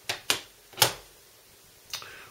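Steelbook disc cases being handled on a wooden tabletop: three sharp clicks and taps in the first second, and one more near the end.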